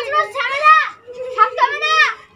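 Speech only: high-pitched voices talking loudly, with a brief pause about a second in.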